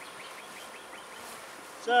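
Steady buzzing of honeybees around an opened hive. A man's voice begins right at the end.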